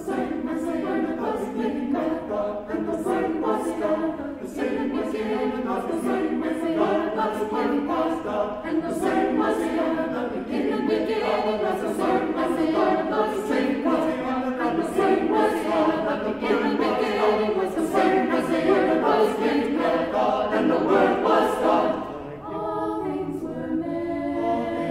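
Mixed choir singing a cappella, the voices in close harmony with crisp, rhythmic consonants; the singing dips briefly near the end and then carries on.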